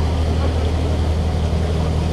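Steady low drone of a sightseeing ship's engine under way, with wind rushing on the microphone.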